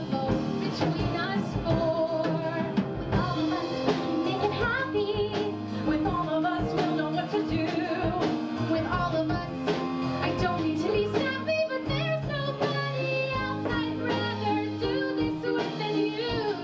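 Female voices singing a musical-theatre song with a live band of piano, drums, bass, guitar, violin and cello, over a steady drum beat.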